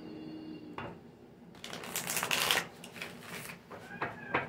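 A Lightseer's Tarot deck being shuffled by hand: quiet handling at first, then a dense flurry of shuffling from about a second and a half in until shortly before the end.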